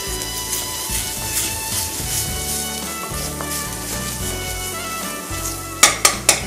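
Chopped green capsicum, onion and garlic sizzling in butter in a wok while being stirred with a spatula, with a couple of sharp clacks of the spatula near the end.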